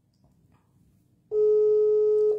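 Over a second of near silence, then a steady electronic beep at one pitch that starts just past the middle and lasts about a second.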